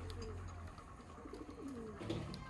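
Pigeons cooing: two low, falling coos, the second starting about halfway through.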